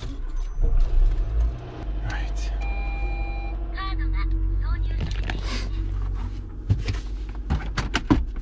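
Car engine starting and settling into a steady idle, heard from inside the cabin, with a short two-tone electronic chime about three seconds in.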